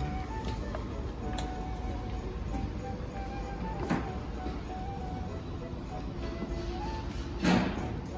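Background music with a simple stepping melody. There is a brief noise about four seconds in and a louder short sound near the end.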